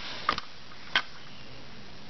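Light handling clicks over a steady background hiss: a quick cluster of small clicks near the start and a single click about a second in.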